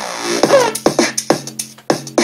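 Electronic track performed live on a Launchpad pad controller from a sound pack. The drum-machine beat breaks off for a hazy sweep with a falling pitch, then comes back in just under a second in at about four hits a second.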